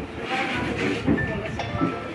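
A woman's voice in a room, drawn out in held notes that step from pitch to pitch.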